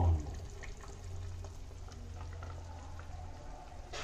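Fish curry bubbling faintly in a pot on a gas stove, soft scattered pops over a low steady hum.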